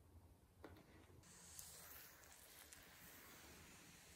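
Near silence: faint room tone with a couple of soft ticks.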